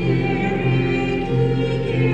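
Women's choir singing a hymn, holding long sustained notes.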